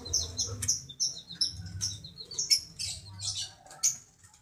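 Lovebird calling in sharp, high chirps that come in quick, irregular runs, over a faint low hum.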